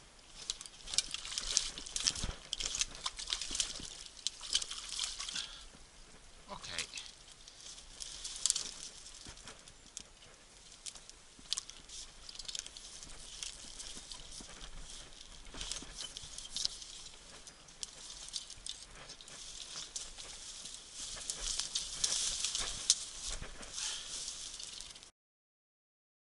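Crackling, rustling handling noise with many small sharp clicks as a hooked chub is played on a light rod through dry brush and drawn into a landing net; it grows louder again near the end.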